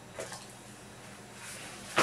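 Paper handling: a short soft rustle just after the start, then a paper towel rustling louder as it is pulled off the roll over the last half second.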